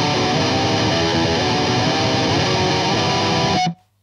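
Distorted electric guitar tremolo-picking triad chord shapes over the open low E, changing chord several times at a steady level, then stopping suddenly near the end.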